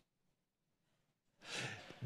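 Near silence, then about one and a half seconds in a man's short breath in, picked up close by a headset microphone.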